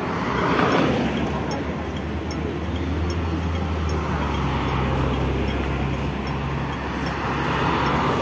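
Road traffic: a steady low engine rumble, with a vehicle passing just under a second in and another swelling near the end.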